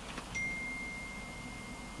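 A single steady high-pitched electronic beep, one pure tone, starting about a third of a second in and lasting about a second and a half.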